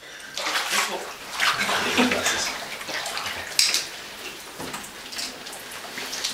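Water sloshing and splashing in an indoor baptistery tank as people move in it, with a few sharper splashes, the loudest about three and a half seconds in.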